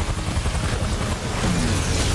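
Helicopter rotor beating loudly and steadily, a fast low chop, from a helicopter hovering close outside a building.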